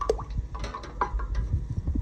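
Light handling noise around glass jars standing in a water bath: scattered small clicks and ticks with a little dripping and trickling water, and plastic wrap being handled.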